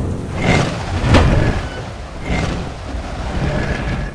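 Cartoon sound effects: a steady low rumble with two rushing swells and a sharp hit about a second in.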